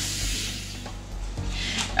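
Kitchen sink faucet running briefly as hands are rinsed, a hiss of water at the start and again near the end, over soft background music.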